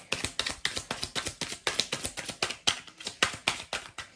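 Tarot card deck being shuffled by hand: a quick, even run of card slaps, about seven or eight a second.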